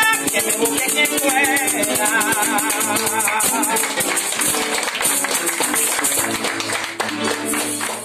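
Venezuelan llanero (joropo) accompaniment: maracas shaking in a quick, even rhythm over plucked strings, typically the llanero harp and cuatro.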